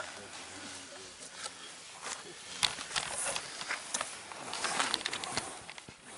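Rustling and crackling of a bow drill kit's birch bark and wooden hearth board being handled on grass, with a cluster of irregular sharp clicks in the middle seconds.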